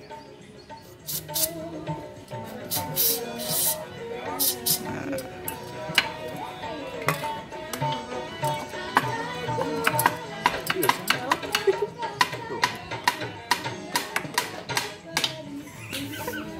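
Background music plays throughout. Early on come several short hissing bursts from an aerosol can of chain lube sprayed onto a seized rear brake pedal pivot, and from about six seconds on a run of sharp metallic clicks and taps as the stuck, rusted pedal is worked loose.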